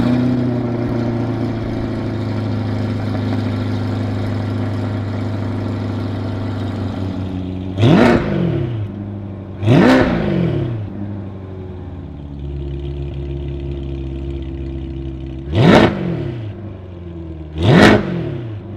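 Chevrolet C8 Corvette's 6.2-litre V8, fitted with Paragon Performance sport catalytic converters and the stock exhaust, starts up and holds a high idle. The idle drops lower about twelve seconds in. It is revved in four quick blips: two in the middle and two near the end, each rising and falling fast.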